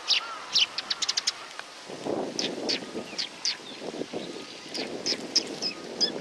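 Eurasian tree sparrows giving short, sharp chirps: a quick run of them in the first second and a half, then more in spaced groups. A low rushing noise comes in about two seconds in.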